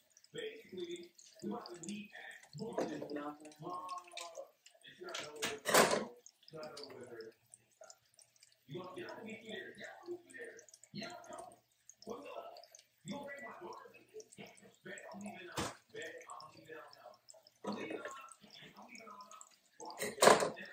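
Quiet talking mixed with small kitchen handling sounds as a cheese packet is opened and squeezed into a pan. A short, loud noise comes about six seconds in, and a single click near sixteen seconds.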